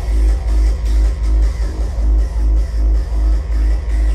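Hardstyle dance music played loud over a festival sound system, a heavy pounding kick drum about two and a half beats a second under a repeating synth figure.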